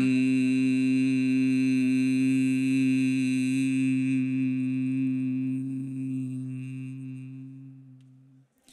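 A man's low, steady hum like a bee: bhramari breathing, one long note held on a single out-breath into a handheld microphone, fading away over the last few seconds as the breath runs out.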